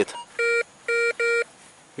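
Metal detector giving three short electronic beeps, the last two close together, each a fixed chord of a few tones.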